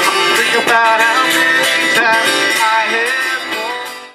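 Live band music: a strummed acoustic guitar with a saxophone melody over it. The music drops in level and fades out near the end.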